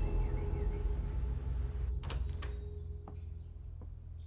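Low, sustained background music in a drama soundtrack, with two sharp clicks about two seconds in.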